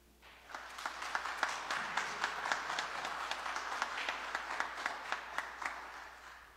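Congregation applauding: clapping starts just after the music stops, builds within a second, with single sharp claps standing out, and dies away near the end.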